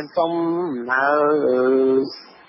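A voice drawing out three long syllables at a nearly steady pitch, chant-like rather than ordinary speech, with the pitch stepping down between them.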